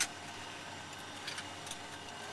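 Steady low hum and hiss inside a small plane's cabin, with a single sharp click at the start.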